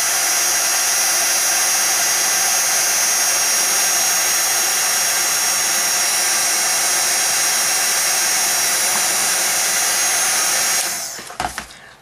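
Embossing heat tool blowing steadily, a rush of hot air with a high motor whine, remelting the embossing powder. It is switched off near the end and the sound dies away over about a second.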